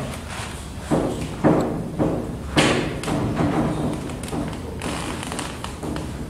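A blackboard eraser knocking against a chalkboard as it is wiped: four sharp thuds about half a second apart in the first three seconds, then a few fainter knocks.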